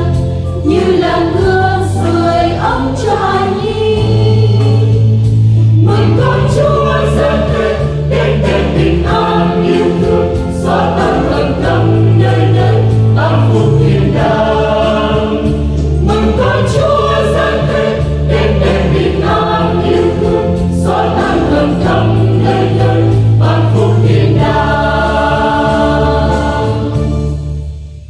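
Church choir singing a Vietnamese Catholic hymn of the Three Kings, with sustained low accompaniment, closing on a held final chord that fades out near the end.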